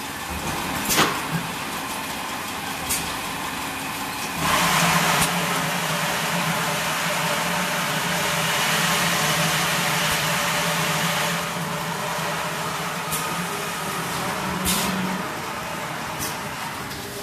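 RFC 4-4-1 5-litre bottle water filling machine running, with sharp mechanical clicks now and then. About four seconds in, a louder rushing noise and a steady low hum start. The rushing eases after about eleven seconds, and the hum stops near the end.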